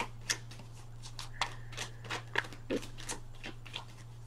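Tarot deck being shuffled by hand: a run of irregular sharp card snaps and flicks, a few a second, over a steady low hum.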